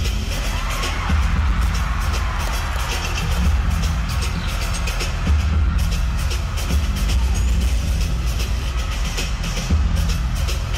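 Loud pop dance track played live through a concert sound system, with heavy bass and a steady beat, and a crowd cheering beneath it.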